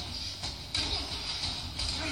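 Television drama audio heard through the set's speaker during a scuffle scene: a rough, noisy mix that jumps louder about three quarters of a second in.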